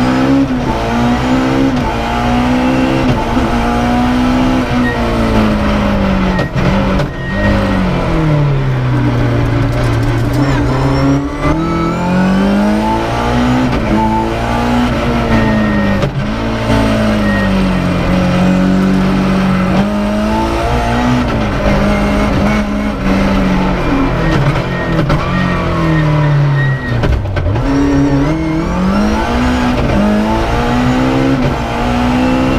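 BMW rally car's engine heard from inside the cabin, revving up and dropping back again and again as the driver works through the gears at full stage pace.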